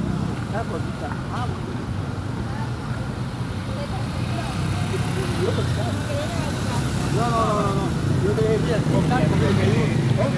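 Street traffic with a steady low engine hum, growing a little louder in the second half, and faint voices talking in the background.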